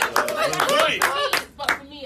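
A small group clapping with excited voices over the claps. It dies away after about a second and a half.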